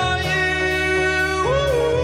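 Electronic dance-pop music with a steady synth bass under a man singing; about one and a half seconds in, he slides up into a long held note.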